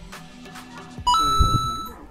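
Electronic ding sound effect: a bright steady tone that comes in suddenly about a second in, holds for about a second and cuts off, over background music.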